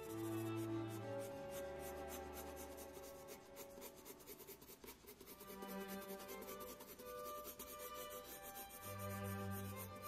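Graphite pencil scratching on sketch paper in quick, repeated shading strokes, with soft background music underneath.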